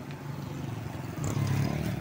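Road traffic of motorbikes and a car passing close by, a low engine hum that grows louder in the second half as the vehicles draw near.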